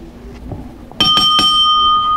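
Wrestling ring bell struck several times in quick succession about a second in, its tone ringing on afterward: the bell that starts the match.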